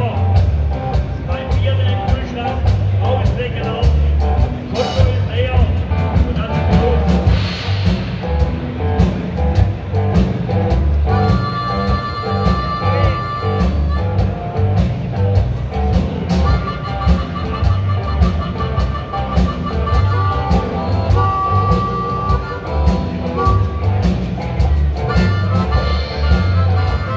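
Live rock and roll band playing: electric guitar, electric bass and a Yamaha drum kit keep a steady beat. From about eleven seconds in, a harmonica joins in with long held notes.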